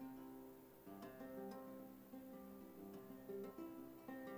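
Acoustic guitar built from beetle-kill pine, played with a capo and picked slowly: single notes and chords plucked and left to ring, with fresh notes about a second in and again later.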